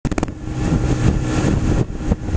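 Johnson outboard motor running steadily at speed while towing a kneeboarder, mixed with the rush of wind and water. There are a few sharp clicks right at the start.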